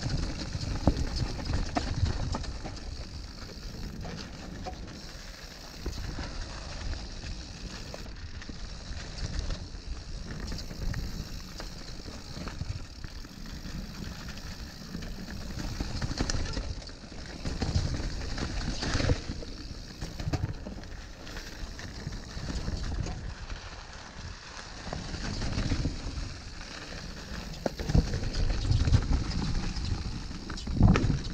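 Mountain bike ridden over a rough trail: continuous tyre and rattle noise that swells and fades in waves, with a few sharp knocks along the way.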